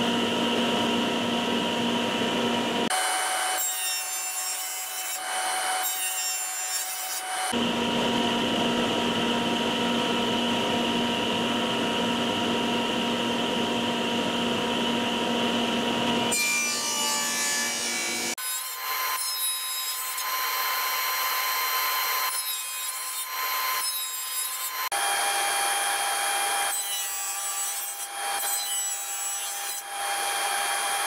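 Table saw running, its blade cutting into the bottom ends of turned wooden chair legs in repeated passes, with spells of the blade spinning free between cuts. The passes widen a slot in each leg to the rocker's thickness.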